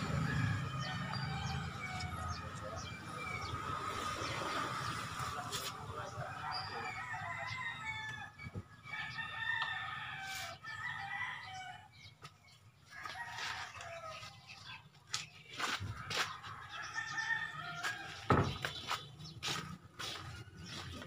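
Chickens clucking, with a rooster crowing. A few sharp knocks and taps come in the second half, the loudest near the end.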